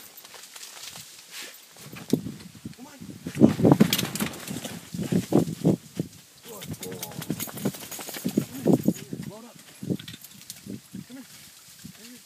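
Low, indistinct talking in several short spells, with a few sharp rustles or knocks about three and a half to four seconds in.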